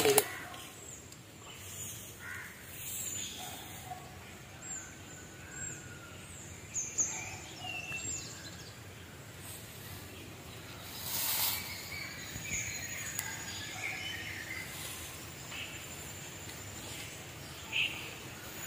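Faint outdoor ambience with scattered bird chirps, some short falling high notes and some lower calls, and a brief swell of noise about eleven seconds in.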